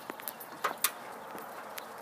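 Faint steady outdoor background noise, with a few brief sharp clicks in the first second and one more near the end.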